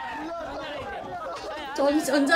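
Several young men talking quickly over one another in Korean, lively group chatter, with a louder voice cutting in near the end.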